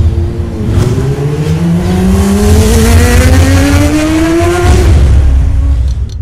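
Engine revving sound effect in a logo intro: one engine note rising steadily in pitch for about four seconds over a heavy low rumble. It then drops away and ends abruptly.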